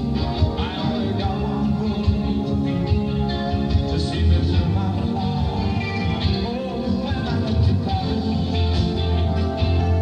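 Live rock band with piano, playing a song on stage, heard through a distant-sounding audience recording of the concert.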